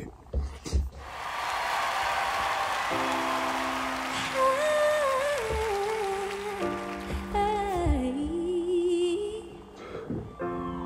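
Music from a played-back performance. Held keyboard chords come in about three seconds in, and a female voice hums a slow wordless melody over them, gliding between notes.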